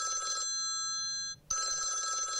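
Office desk phone ringing with an electronic ring of several steady tones sounding together. It breaks off briefly about a second and a half in, then rings again.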